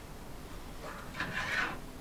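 A brief plastic scrape about a second in as a removed laptop keyboard is handled and set down on a workbench, over a faint low hum.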